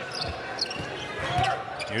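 Basketball being dribbled on a hardwood court, a few thumps of the ball over the steady hubbub of an arena crowd.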